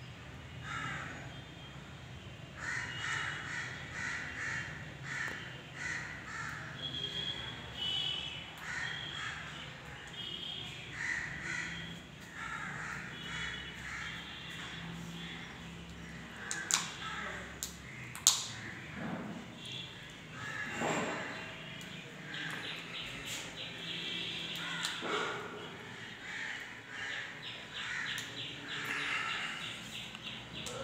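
Crows cawing repeatedly, call after call, with two sharp knocks about halfway through.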